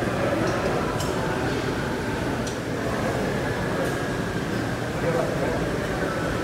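Busy gym background: a steady murmur of distant voices over a low hum, with a few faint clinks of metal equipment about one, two and a half, and four seconds in.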